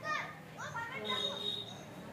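Children's voices chattering and calling in the background. A thin, high, steady tone sounds for about a second, starting about a second in.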